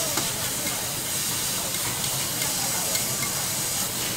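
Vegetables sizzling steadily on a hot flat iron griddle as they are stir-fried, with a few light clicks of metal spatulas.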